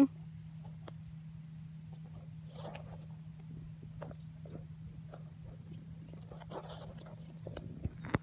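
Distant farm tractor engine droning steadily at one pitch as it approaches across the field, with scattered faint ticks and a brief high chirp about four seconds in.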